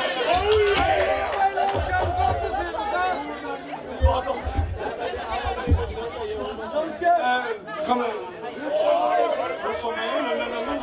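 Speech: a man talking into a microphone over a PA between songs, with crowd chatter.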